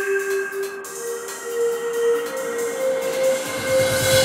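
Synthesized intro music: sustained drone tones over an airy hiss, with a held tone that steps up in pitch through the middle.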